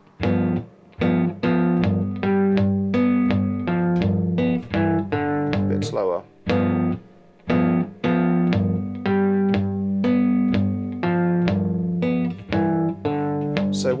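Three-string cigar box guitar in open G (GDG) tuning, played fingerstyle without a slide: plucked notes and two-note chord shapes with thumb and fingers in a blues riff moving between G7 and G.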